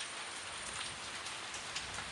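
Rain falling steadily, an even hiss with no pitch.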